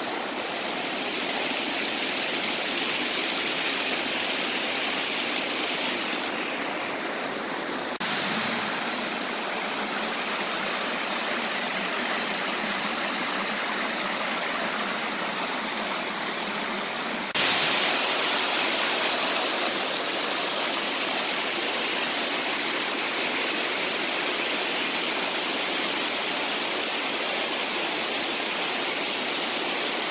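Shallow rocky stream tumbling over small cascades and waterfalls: a steady rush of water that changes abruptly about eight seconds in and gets louder about seventeen seconds in.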